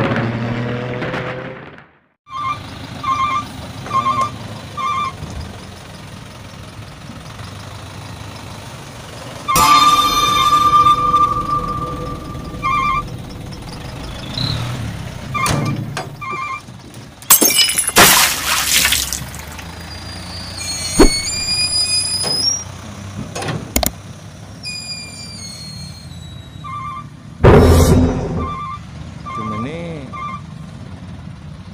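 Dump truck working on a dirt lot: a steady engine rumble under a reversing alarm that beeps in short runs of about four beeps, a little under a second apart. Several loud rushing bursts stand out, the loudest about halfway through.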